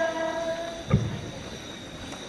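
A singing voice holds one long note that stops a little under a second in, followed by a single thump about a second in.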